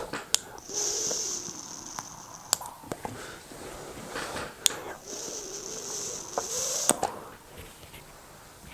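Two draws on a mouth-to-lung rebuildable tank atomizer (Vapefly Brunhilde MTL RTA), each about two seconds of airy hiss as the coil fires and air is pulled through the small airhole. Sharp clicks come at the start and end of each draw, and vapour is breathed out between the draws.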